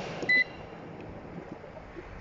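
Evaporative air cooler's control panel gives one short, high beep as its cooling button is pressed, switching on the water-cooling mode. The cooler's fan runs under it as a steady soft rush of air.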